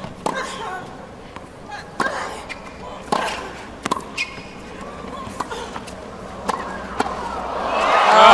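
Tennis ball hits and bounces during a hard-court rally: sharp hits about a second apart, with short grunts from the players on some of the strokes.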